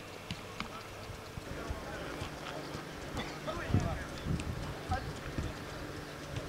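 Footballs being kicked and passed: a string of dull thuds at an uneven pace, with players' voices calling across the pitch. The kicks and voices get louder in the second half.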